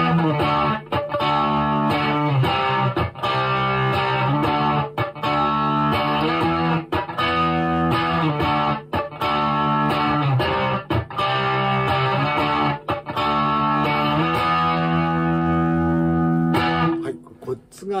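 Electric Stratocaster played through a Zoom G2.1Nu multi-effects preset 52 'TexasMan', playing slow root-and-fifth power-chord backing. Each chord rings for about a second with brief breaks between them, and the playing stops about a second before the end.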